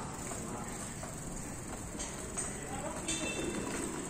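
A toddler's tricycle rolling over paving stones, its small wheels rattling, with a few light knocks about two and three seconds in as it bumps over the joints.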